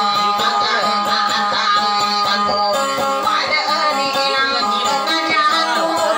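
A woman singing a folk song to her own plucked small acoustic guitar, the sung melody bending over held string notes.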